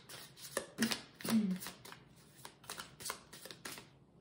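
A deck of tarot cards being shuffled by hand: a quick, uneven run of card slaps and clicks that thins out near the end.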